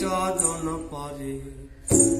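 A man singing held, bending notes of a Bangla folk song, accompanied by a plucked ektara and a hand drum. The music drops away briefly near the end before a sharp drum strike.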